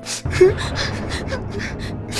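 A person gasping, with a run of quick, irregular breaths several times a second.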